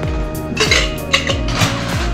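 Ice cubes clinking as they go into a metal cocktail shaker tin, a few separate clinks, over steady background music.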